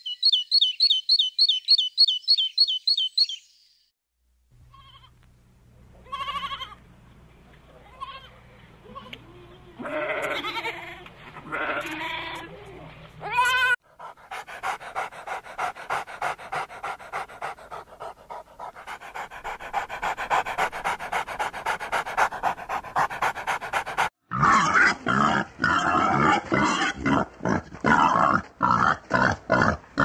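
A run of animal sounds. First a great tit gives rapid, repeated high chirps. After a short pause a dog whines and yelps, then pants quickly and steadily, and in the last few seconds wild boar grunt loudly and repeatedly.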